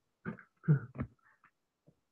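A woman clearing her throat: a few short bursts over about a second.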